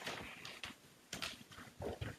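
Irregular rustling and a few soft thumps from a robe brushing a clip-on microphone as its wearer turns and walks away.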